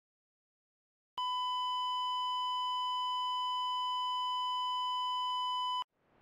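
Heart-monitor sound effect: a single steady electronic flatline tone starts about a second in, holds unchanged for nearly five seconds, and cuts off abruptly just before the end.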